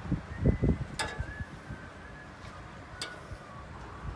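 Metal kitchen tongs clicking as meatballs are picked off the grill and set on a plate: dull low thumps in the first second, then two sharp metallic clicks, about a second in and about three seconds in, each with a brief faint ring.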